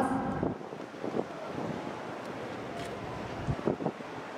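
A woman's announcement ends on its last syllable at the start, then a steady, even background rush like wind on the microphone, with a few soft thumps near the end.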